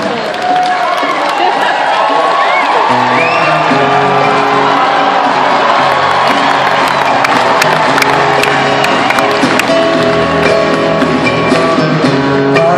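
Arena crowd cheering and whooping at a rock concert, with live band music coming in about three seconds in and carrying on.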